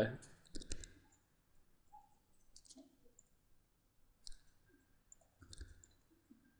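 Faint computer mouse clicks, a few scattered ones about every second or so, as points are picked during a Rhino copy command.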